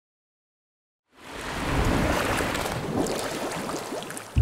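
Rushing, crackling water noise that fades in about a second in after complete silence and then holds loud and steady.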